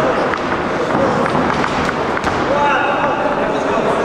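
Voices calling and shouting in a large echoing sports hall, with a few sharp smacks of gloved strikes and kicks landing in a kickboxing bout.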